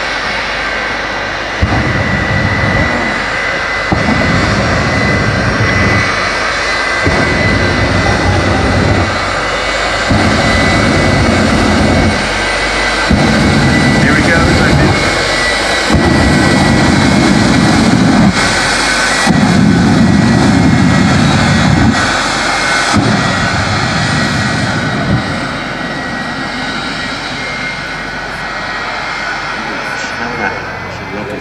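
Jet engine of a jet-powered school bus whining steadily, with about eight surges of deep rumble, each roughly two seconds long, as fuel is dumped into the exhaust and lit in bursts of flame. The surges grow louder toward the middle and die away near the end.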